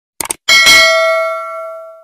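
A quick double click, then a single bell ding that rings out and fades over about a second and a half. It is the sound effect of a subscribe-button animation, with the notification bell being clicked.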